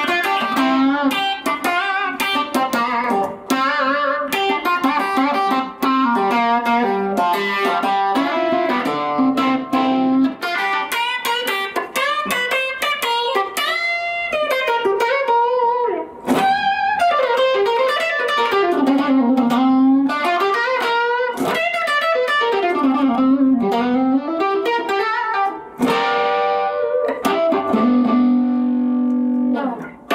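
Tom Anderson Cobra solid-body electric guitar played solo: fast single-note lead runs with string bends and vibrato in the middle, ending on held, ringing notes.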